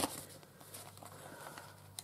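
Faint handling of paper and card in a handmade journal: a light tap at the start, then soft rustles and small clicks, over a faint low steady hum.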